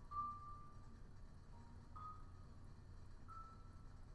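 Vibraphone played very softly: three single high notes struck a second or two apart, each ringing for about a second, with fainter low notes beneath.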